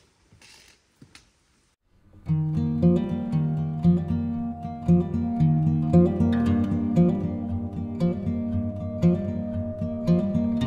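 A few faint clicks and a brief rustle, like trekking poles and boots on rock. About two seconds in, background acoustic guitar music starts, with a regular accent about once a second.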